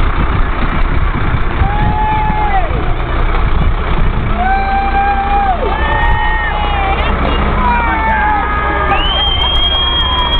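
A fire engine's engine keeps up a steady low rumble amid crowd noise. Over it come several long held tones at different pitches, each lasting about a second and sagging in pitch as it ends.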